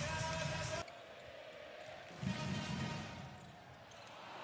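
Handball arena sound: a brief stretch of music-like held tones that cuts off suddenly under a second in, then quieter court sound with a ball bouncing and a low rumble of crowd in the middle.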